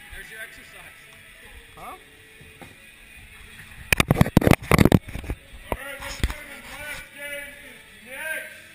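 A rapid burst of sharp cracks lasting about a second, typical of paintball markers firing, over a background of voices and music.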